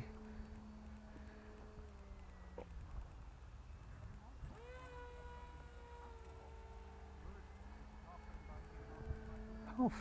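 Small electric motor and pusher propeller of a foam RC glider buzzing faintly in flight. Its pitch sags slightly a couple of seconds in, then rises about four and a half seconds in as the motor speeds up, and holds steady until about seven seconds.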